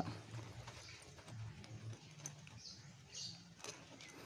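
Faint handling sounds of a bag zipper being worked by hand: a few soft clicks and rustles over a low steady hum.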